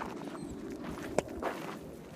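Footsteps on a gravel path at a walking pace, with one sharp click a little past the middle.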